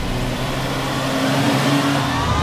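BMW G42 2 Series Coupé engine revving up, its pitch rising from about a second in, over a steady low tone.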